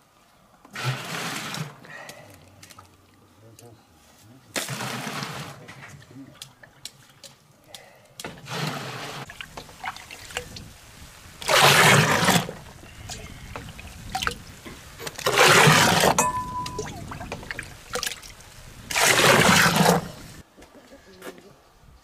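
Water ladled from a bucket and poured into a stainless-steel pot, about six pours a few seconds apart, each splashing for about a second, the later pours louder. It is the water being scooped off settled kudzu-root starch.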